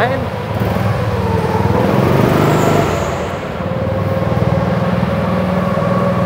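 Go-kart engine running under the driver on a warm-up lap, its pitch and level shifting with the throttle and easing off briefly about three seconds in before picking up again.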